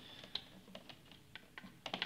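Faint, scattered light clicks and taps, about half a dozen, from hands working the wires and a screwdriver at the terminals of a plastic socket faceplate.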